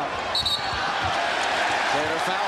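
A referee's whistle blows once, short and shrill, about half a second in, calling a foul. Arena crowd noise runs underneath, with a few thumps of the basketball on the hardwood court.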